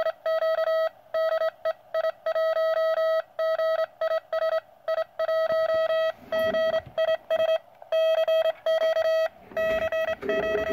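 Morse code (CW) signal on the 40-metre band received by a QRP Labs QCX-mini transceiver and played through a small salvaged laptop speaker. It is a single steady tone keyed on and off in rapid dots and dashes.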